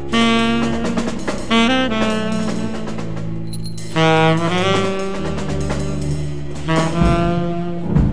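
Jazz quartet playing a slow ballad: alto saxophone holding long melody notes over double bass and drums, with trombone.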